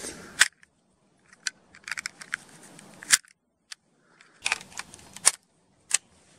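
Rifle cartridges being pressed into a detachable box magazine: a series of sharp clicks and short metallic clatters, several apart with silent gaps between them.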